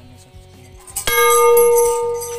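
Large metal temple bell struck once about a second in, then ringing on loudly with a steady low tone and several higher overtones.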